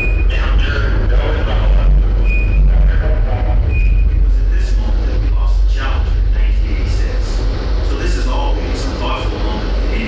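Deep, continuous rocket rumble of a simulated space shuttle ascent, played over loudspeakers. Three short high beeps sound in the first four seconds, and indistinct voices come and go over it.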